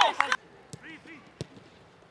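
Men shouting, cut off abruptly a third of a second in, then a few sharp thuds of a football being kicked, the loudest about a second and a half in, over faint distant shouts.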